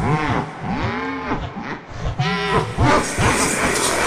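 Fan-made horror creature sound, the imagined voice of the Smiler: a deep, distorted, laugh-like voice in several drawn-out calls, each rising and falling in pitch.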